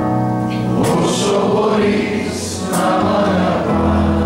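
Live performance of a slow Greek ballad: a man singing into a microphone over instrumental accompaniment with long held chords.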